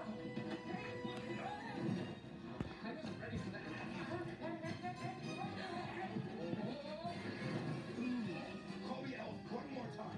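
A film soundtrack playing from a television and picked up off the set by a phone, thin and roomy: music runs throughout with voices over it.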